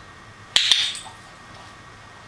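A dog-training clicker pressed once about half a second in, giving a sharp double click, marking the dog's touch on the post-it note target.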